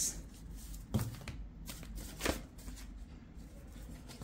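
A deck of tarot cards being shuffled and handled by hand, with two louder card clicks about one second and just over two seconds in.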